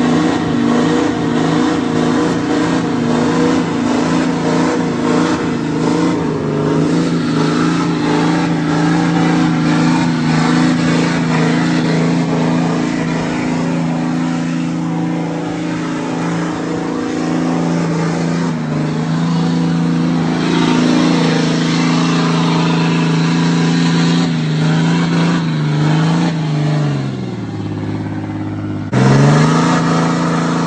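Lifted Ram heavy-duty pickup's engine held at high revs through a burnout, the rear tires spinning and smoking on the pavement. Near the end the revs waver and sag, then the sound changes abruptly and the engine revs up again, louder.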